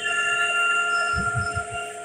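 A steady electronic ringing tone of several pitches held together, with a few soft low thuds about a second in.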